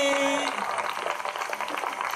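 A held sung note ends about half a second in, followed by audience applause, a dense even patter of many hands clapping.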